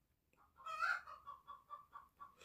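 Faint animal calls in the background: one short call about half a second in, then a run of short repeated notes, about four a second.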